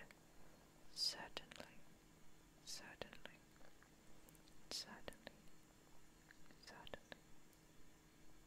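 Faint close-microphone whispering with small mouth clicks: a few short, breathy whispered phrases about two seconds apart.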